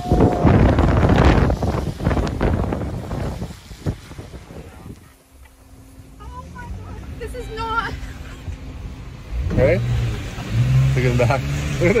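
Storm wind gusting hard against the microphone, loud over the first few seconds and then easing off, with a faint steady low hum in the lull. Voices come in near the end.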